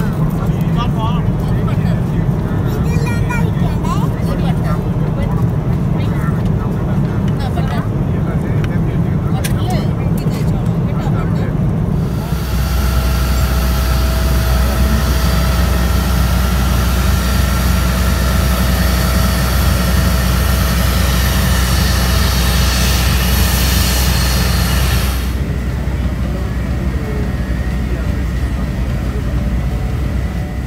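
Steady low drone of a jet airliner's cabin in flight. About twelve seconds in it gives way to the loud steady whine and hiss of a parked jet airliner and its equipment on the apron. Near the end that drops away to the engine rumble inside an airport apron bus.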